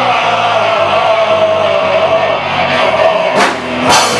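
Live rock band of electric guitars, saxophone and drums playing, with one long held note carrying over the band. Two sharp drum or cymbal hits come near the end.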